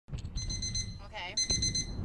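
Smartphone wireless emergency alert tone, signalling an incoming Korean emergency alert message: two bursts of rapid, high-pitched beeps, each about half a second long, with a short pause between them.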